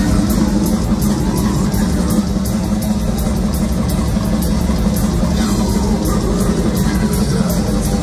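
Death metal band playing live and loud: distorted guitars and bass over a drum kit, with cymbals struck in a steady, even beat.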